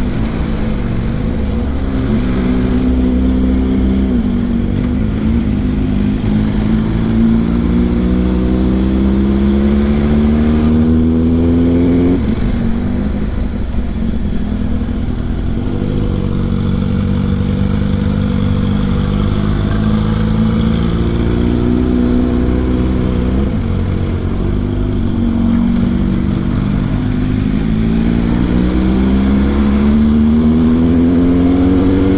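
Honda NC 750's parallel-twin engine heard from the rider's seat, pulling uphill. Its pitch climbs steadily for about ten seconds, drops at a gear change, then rises again near the end, over a steady low wind rumble on the microphone.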